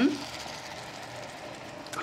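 Beaten eggs sizzling steadily in a hot skillet of chopped asparagus and bok choy as they are poured in to cook on the stovetop.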